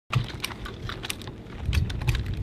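Irregular light clicks and rattles of rifles and gear being handled, over a low rumble of wind on the microphone.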